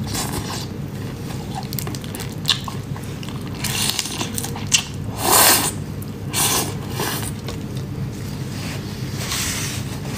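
Close-miked eating of whole prawns in chili soy marinade: irregular wet sucking, squishing and crunching of the shells, loudest about five and a half seconds in, over a steady low hum.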